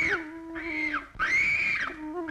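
Soundtrack music: a held low note under three high gliding calls, each rising and then falling, about half a second long.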